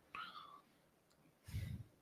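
Mostly quiet, with a man's faint breathy vocal sounds: a soft whispered breath just after the start and a brief quiet low murmur about a second and a half in.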